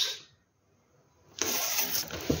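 The end of a spoken word, then a pause, then a burst of rustling noise starting about one and a half seconds in.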